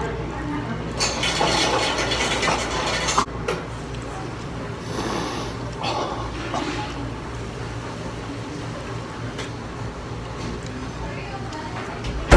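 A man eating a spicy chicken wing close to the microphone: biting, chewing and mouth noises, loudest in a dense spell during the first few seconds. Quieter chewing follows over a steady low room hum.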